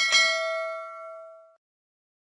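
A notification-bell ding sound effect: one bright chime of several tones that dies away over about a second and a half.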